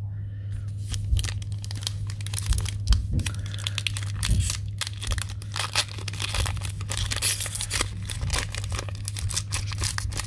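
Foil wrapper of a Donruss basketball trading-card pack crinkling in the hands and being torn open, with dense crackles and rustles throughout.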